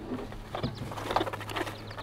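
Soft rustling and light small knocks from a cloth bag holding a hen wood duck as it is handled, over a steady low hum.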